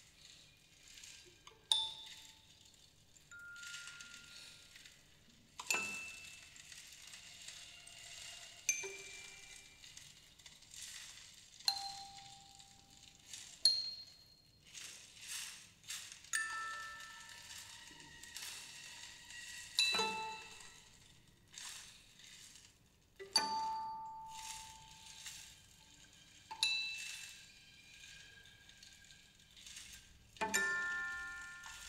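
Sparse, quiet contemporary chamber music: single high, bell-like struck tones, each ringing out and fading, every two to four seconds, with soft airy noise between some of them.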